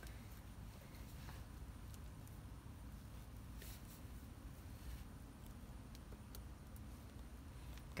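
Faint rustling and crumbling of hands working loose potting soil around plant stems in a pot, with a few soft ticks.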